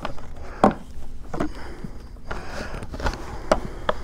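A plastic five-gallon bucket lid being handled and turned by hand, knocking and clicking several times, with a short scraping rub about midway.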